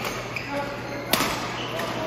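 Badminton racket striking a shuttlecock during a doubles rally: a sharp crack about a second in, with a lighter tap earlier, ringing briefly in a large hall over background voices.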